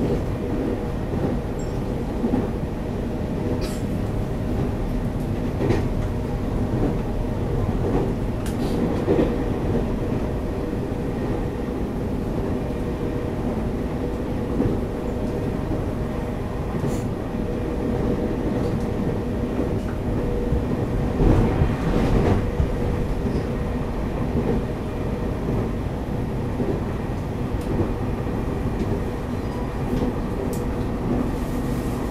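Taiwan Railways EMU800 electric commuter train heard from inside the car while running at speed: a steady rumble of wheels on rail under a constant hum, with scattered clicks. The ride grows louder for a couple of seconds about two-thirds of the way through.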